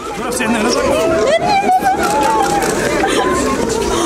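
Several people talking and calling out at once in an emotional crowd at a reunion. Near the middle, one voice is drawn out in a long, high call.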